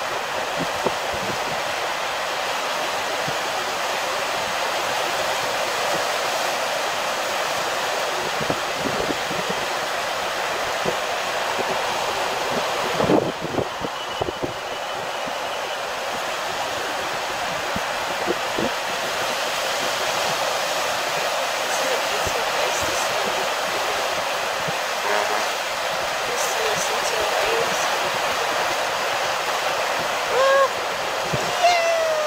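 Ocean surf washing over rocks and sand at the water's edge, a steady hiss of breaking waves with a brief dip about halfway through.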